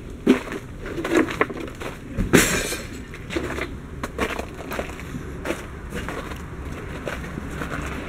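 Footsteps crunching on crusted, icy snow: irregular crackling crunches, the loudest about two and a half seconds in.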